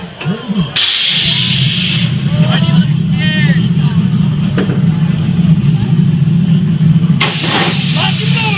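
Roller coaster station machinery: a burst of pneumatic air hiss about a second in, as a loud steady low hum starts up and holds, with a second hiss near the end, while the launch coaster's train sits ready to launch.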